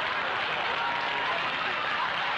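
Studio audience laughing and applauding, a dense steady wash of sound after a gag.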